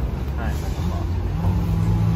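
A steady low hum and rumble with faint voices in the background; the hum steadies and grows a little from about a second and a half in.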